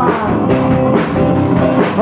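A rock band playing live, with drum kit and electric guitar.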